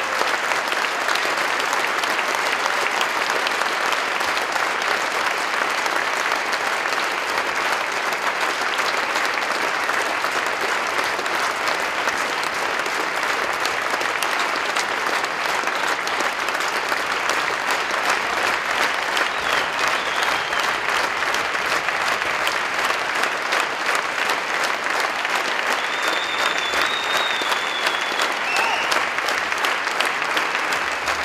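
Large audience applauding steadily, a dense continuous clapping that neither builds nor fades.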